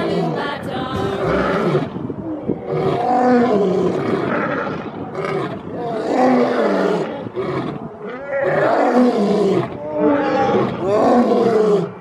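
Two male lions roaring together: a dense chorus of roars, then a series of repeated calls, each rising and then falling in pitch.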